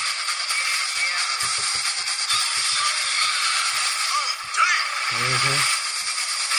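Movie trailer soundtrack playing: music under a dense wash of effects, with a short burst of a voice about five seconds in.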